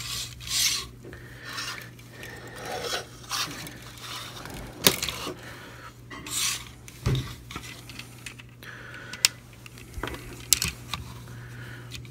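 Hard plastic parts of a Mastermind Creations R-11 Seraphicus Prominon figure being handled and pegged together: irregular rubbing and scraping with a few sharp clicks, the sharpest about five seconds in.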